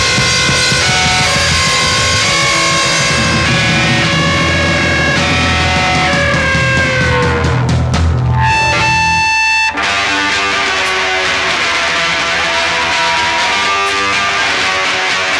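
Live punk rock band (distorted electric guitar, bass and drum kit) playing loudly. About eight seconds in, the band drops out for roughly a second, leaving a held note ringing, then comes back in.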